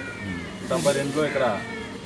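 A person's voice, drawn out with rising and falling pitch, loudest about a second in.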